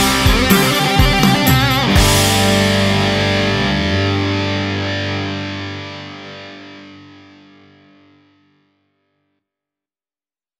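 Rock band with distorted electric guitar, bass and drums playing the song's closing bars, ending on a final chord struck about two seconds in that rings out and slowly fades away.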